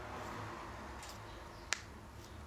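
A single short, sharp click about three-quarters of the way through, over faint steady room noise.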